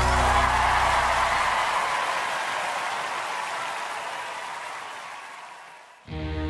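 Audience applause breaking out at the end of a song, over the last held chord of the backing music, which dies away in the first couple of seconds; the applause then fades steadily away.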